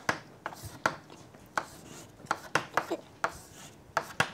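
Chalk writing on a blackboard: a string of about ten short, sharp taps and scratches as the chalk strikes and drags across the board forming letters.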